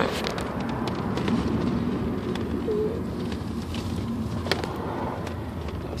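Steady road and engine noise inside a slowly moving car, with a few light clicks and knocks and one brief soft rising-and-falling note about halfway through.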